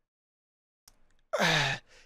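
A man's short, breathy vocal sound, falling in pitch, about a second and a half in, after a pause in his talk; two faint clicks just before it.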